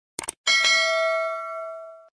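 A short mouse-click sound effect, then a single bright bell ding that rings out and fades over about a second and a half: the notification-bell chime of a subscribe-button animation.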